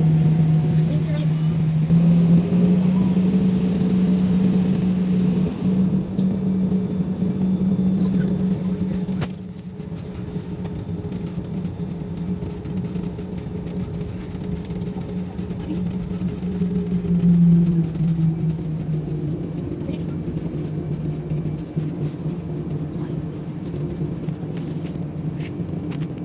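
Jet airliner's engines heard from inside the passenger cabin while taxiing: a steady hum with a low tone that steps up in pitch a couple of seconds in and drops back near the end, and the whole sound gets quieter about nine seconds in.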